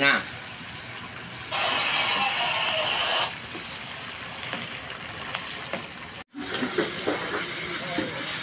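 Beef frying in oil and sauce in a wok on a gas burner, sizzling and bubbling as it is turned with a slotted turner; the sizzle grows louder for about two seconds, then settles back.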